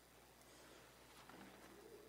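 Near silence: room tone, with a faint low note that rises and falls near the end.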